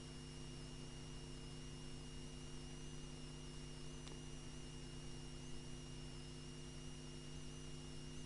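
Faint, steady electrical hum and buzz from the recording's background noise: several low steady tones with a thin high whine above them, and one faint click about four seconds in.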